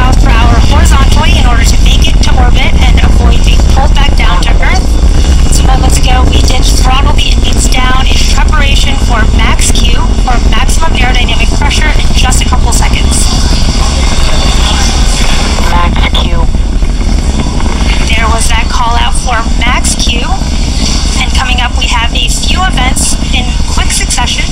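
Falcon 9 first-stage rocket engines heard from a distance during ascent: a loud, deep, crackling rumble that eases slightly near the end, with indistinct voices over it.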